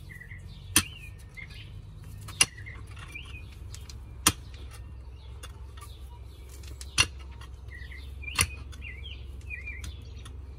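Pickaxe striking into the soil five times at uneven intervals of about one and a half to two and a half seconds, digging a pit. Small birds chirp throughout.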